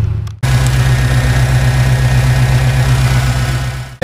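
An early Ford Bronco's engine idling steadily, running on a newly fitted MSD 6A multiple-spark ignition box. The sound cuts in suddenly about half a second in and fades out near the end.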